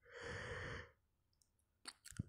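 The lecturer breathes once, close to the microphone, for under a second near the start, during a pause in speaking. A faint click comes near the end.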